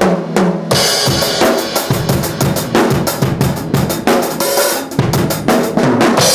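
PDP Concept Maple 7-piece drum kit played hard, its heads new and still being broken in. It opens with a quick run of tom strokes, and under a second in the cymbals come in over a fast beat of bass drum and snare.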